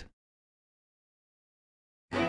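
Near silence: a dead gap with no sound at all.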